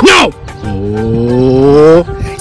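A long, low, moo-like call that rises slowly in pitch for well over a second, after a brief shouted word.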